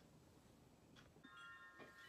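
Near silence, then just over a second in a faint chime of several steady high tones starts and rings on.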